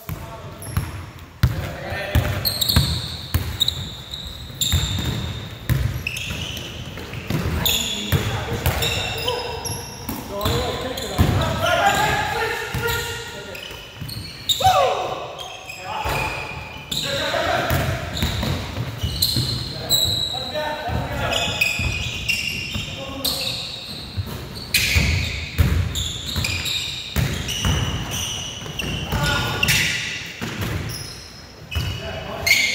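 Indoor pickup basketball: a basketball bouncing on a hardwood court as it is dribbled, sneakers squeaking, and players calling out, all echoing in a large gym.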